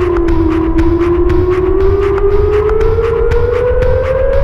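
Experimental electro music built on sampled loops: a steady heavy bass and quick regular ticks under a long siren-like tone that dips slightly, then slowly rises in pitch.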